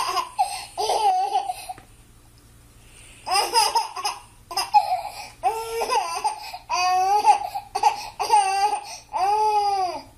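A baby vocalizing in a string of short, high calls with a pause partway through, ending in one long rising-and-falling call.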